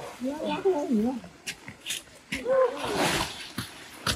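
Indistinct voices, with light footsteps on a dirt path and a brief rustle of leaves about three seconds in.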